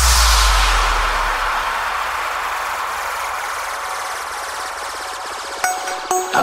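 Electronic dance music transition: a deep bass note dies away in the first second, leaving a long hissing noise wash that slowly fades. A new track's sung melody comes in near the end.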